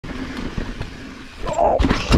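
Mountain bike rolling fast down a dirt singletrack: tyre and wind noise, then a short pitched sound and a run of sharp knocks near the end.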